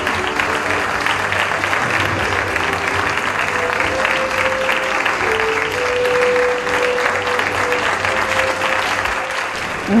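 Audience applauding steadily, with music underneath; held musical notes become clearer from about a third of the way in.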